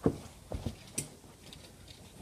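Soft footsteps of a person in socks walking on carpet: about four muffled thuds in the first second, growing fainter as the walker moves away.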